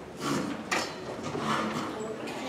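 Chairs scraping and knocking as several people sit down at a table, a few separate rustling, scraping sounds with a sharper knock a little under a second in.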